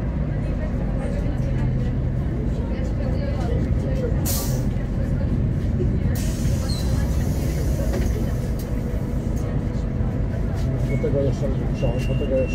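Solaris Urbino 12 III city bus's DAF PR183 diesel engine running steadily at low revs, heard from inside the passenger cabin while the bus is almost at a standstill. A short, sharp air hiss comes about four seconds in.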